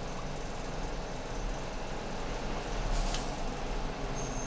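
Steady background noise with a low hum, and one short hiss about three seconds in.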